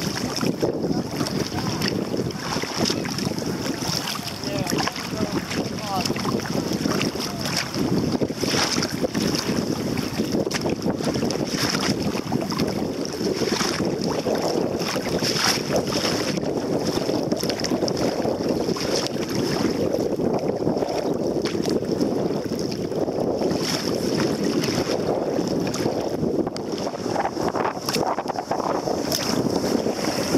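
Wind buffeting the microphone over choppy water slapping against a kayak hull, with short splashes of paddle strokes every few seconds.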